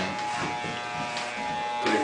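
Electric hair clippers running with a steady buzz, touching up missed hairs at the end of a buzz cut.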